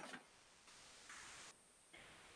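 Near silence with one brief click at the very start and a faint hiss about a second in.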